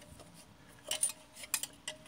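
A few light metallic clinks and knocks, about a second in and again near the end, as a Honeywell Vaporstat steam pressure control is picked up and handled.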